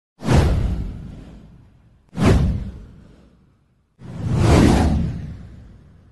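Three whoosh sound effects for an intro title animation, about two seconds apart, each fading away. The first two hit sharply; the third swells up more gradually.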